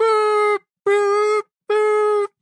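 A person's voice holding a flat, steady note three times in a row, each about half a second long with short gaps between, like a drawn-out mock groan.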